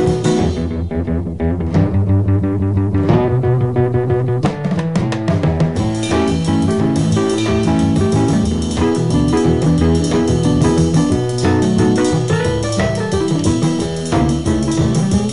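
Instrumental break of a 1959 rhythm-and-blues recording, with no singing: electric piano over bass and drums. Cymbal strokes thicken from about four seconds in.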